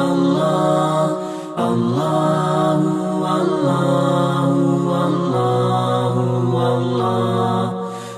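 Closing-credits music: voices singing a slow chant in long held notes, with short breaks about a second and a half in and near the end.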